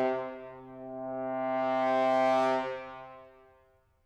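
Solo French horn holding one long low note that starts sharply, swells to a peak around two seconds in, then fades away to silence near the end.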